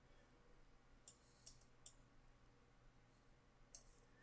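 Near silence broken by four faint computer mouse clicks: three about half a second apart around the middle, and one near the end.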